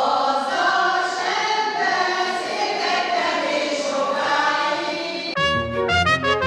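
A group of older men and women singing a song together. About five seconds in it cuts abruptly to a short instrumental station jingle.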